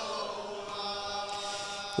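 A man's voice chanting an Arabic mourning elegy, holding a soft, drawn-out note between loud phrases.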